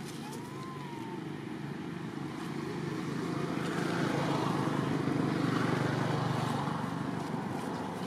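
A motor vehicle passes by, its engine and road noise growing louder to a peak about five to six seconds in, then easing off. Early on there is one short call that rises and falls in pitch.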